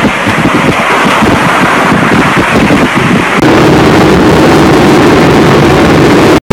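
Loud, steady rushing of a waterfall pouring into a pool. About three and a half seconds in it cuts to a steadier low rumble from inside a car.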